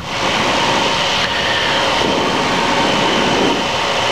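Steady rush of airflow over a wingtip-mounted camera together with the steady drone of an Extra 300L's six-cylinder engine and propeller in flight.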